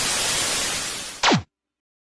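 Television static: a loud, even hiss that eases slightly before a short tone sweeps steeply down in pitch about a second in, and the sound cuts off.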